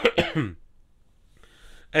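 A man coughs, a short fit of two or three quick coughs.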